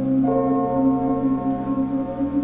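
Ambient drone soundtrack: a steady low hum under layered sustained tones, with a new, higher chord entering abruptly about a quarter second in and holding.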